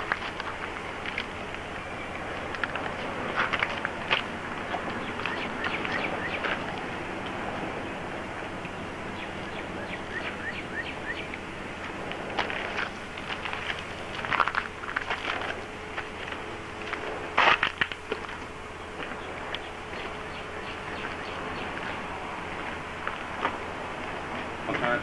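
Steady background hiss with a faint hum, broken by scattered short clicks and knocks; the loudest knock comes about two thirds of the way in. No engine is running.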